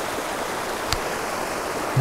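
Steady rush of flowing river water, with a faint click about a second in.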